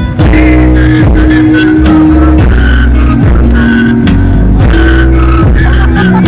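Loud live band music over a festival PA: an instrumental passage with a heavy held bassline, sustained keyboard chords and a regular drum beat. The singing breaks off right at the start.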